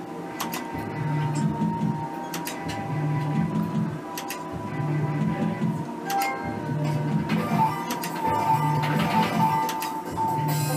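Merkur 'Up to 7' slot machine running spins: its looping electronic game music with a short bass figure repeating about every second, over sharp clicks as the reels stop.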